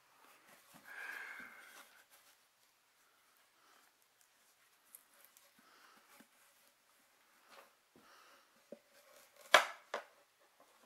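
Dog-stair boards being handled during assembly: a short sliding rustle about a second in, scattered light taps, and one sharp knock near the end as a board is set against the frame.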